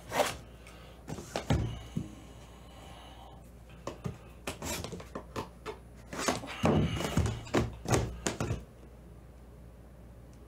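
Aluminium briefcases being handled: a series of metallic clicks and knocks from the cases and their latches, coming in short clusters, with the busiest stretch a little past the middle.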